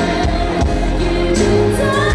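Live concert performance: a female vocalist singing a pop ballad into a handheld microphone over band accompaniment, amplified through an arena's sound system.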